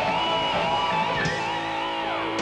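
Live lead electric guitar solo: long sustained notes held with vibrato, stepping to a new note about a second in.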